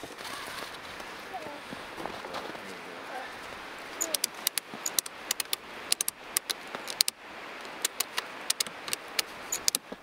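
Ratchet strap being tightened down: from about four seconds in, a run of sharp, irregular clicks, several a second, over a steady outdoor hiss.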